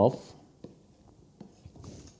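Faint, short scratchy strokes of a pen writing a derivative sign and an opening bracket, a few separate strokes across the two seconds.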